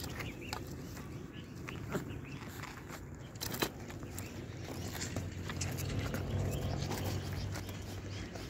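Pebbles shifting and a metal chain clinking on stones as a chained puppy moves about, with scattered sharp clicks. A low steady drone of unknown source comes in during the second half.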